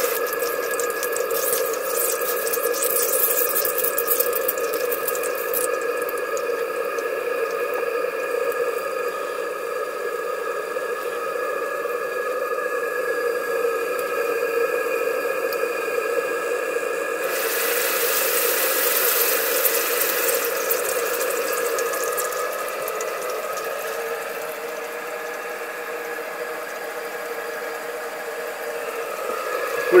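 Live-steam model engine and its boiler running on about 30 psi: a loud, steady rushing hiss from the boiler with a steady humming tone under it, and a sharper burst of hiss from about 17 to 20 seconds in.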